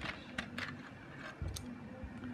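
Plastic pens and a plastic pen case being handled on a cloth surface: a few light clicks and taps, with a soft thump about one and a half seconds in.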